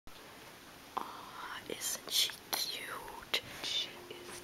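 Soft whispering, with a few sharp clicks between the whispers.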